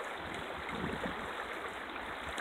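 Shallow mountain creek running over rocks and riffles, a steady rushing water sound.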